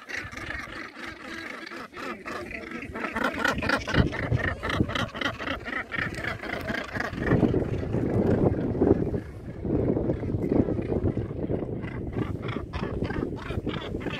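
Northern gannet colony calling: harsh, rapidly repeated grating calls from many birds, strongest in the first half and again near the end. A low rumble swells through the middle.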